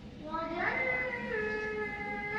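Background music: a high, sustained melody of held notes that step down in pitch partway through.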